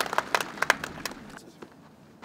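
A small group applauding with separate hand claps that thin out and die away about one and a half seconds in, leaving only a few single claps.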